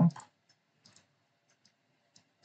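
A few faint, short computer mouse clicks, spaced irregularly.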